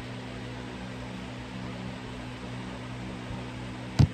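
Steady hiss with a low, constant hum: room noise with no other activity. A single sharp click comes right at the end.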